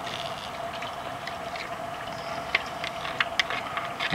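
Steady background hiss with a faint steady hum, and a few small clicks from hand handling of the parts about two and a half and three and a half seconds in.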